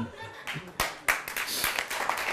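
Studio audience clapping, starting about a second in and continuing as a dense patter of many hands.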